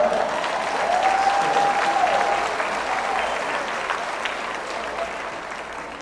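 Congregation applauding in a hall, loudest at first and gradually tapering off, with a single voice calling out over the clapping about a second in.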